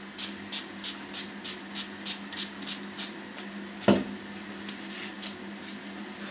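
Hand-pump kitchen spray bottle spritzing water onto freshly baked thin lavash to keep it from drying out and turning brittle: a quick series of about a dozen sprays, three or four a second, over the first three seconds. A single knock follows about four seconds in, over a steady low hum.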